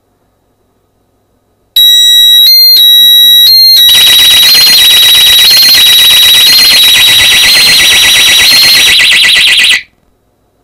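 Pyronix Enforcer wireless alarm going off after a sensor is triggered. It starts with loud, high-pitched beeps for about two seconds, then becomes a continuous, rapidly warbling siren that cuts off suddenly near the end.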